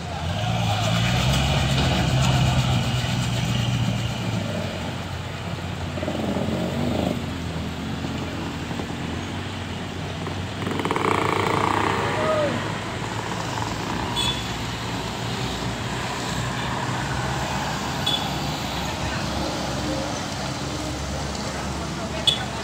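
Road traffic on a steep, wet mountain hairpin: motorcycle and car engines running as they pass close by, with louder swells early on and again about halfway through, over a steady background of traffic.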